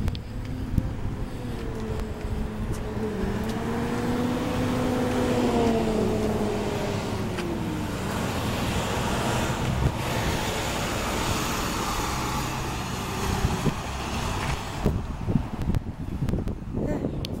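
A motor vehicle passing on the street: a steady engine drone that dips in pitch about halfway through, followed by a rush of road noise that fades near the end.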